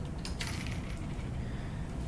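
A few faint clicks as a USB cable is plugged into the robot's Arduino Nano circuit board, over a low steady room hum.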